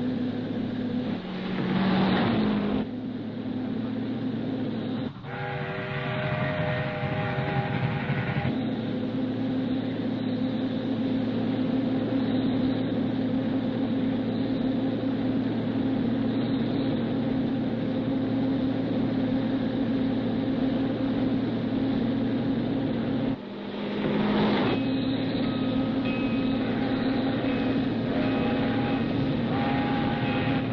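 A speeding car's engine running hard with a train's rumble. A train whistle blows for about three seconds starting about five seconds in, and again for the last several seconds.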